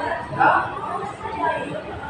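Background chatter of diners: several people talking at once, with no one voice standing out.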